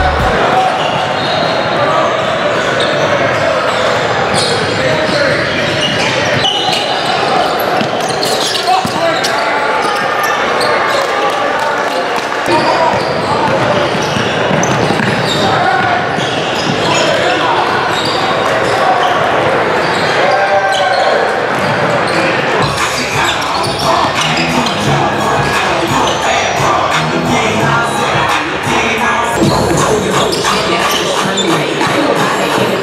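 Live basketball game sound in a large echoing gym: basketballs bouncing on the hardwood court amid indistinct shouting and chatter from players and onlookers.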